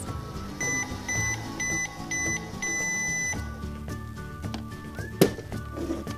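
Toy microwave beeping: four short beeps and then a longer one, the signal that its cooking cycle is done. There is one sharp click about five seconds in as its door is opened.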